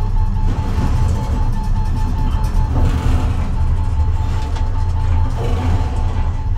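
A film soundtrack playing through a home theater system with an SVS subwoofer, recorded in the room: a loud, steady deep bass rumble from the subwoofer carries the mix, with a faint rapidly pulsing high tone above it.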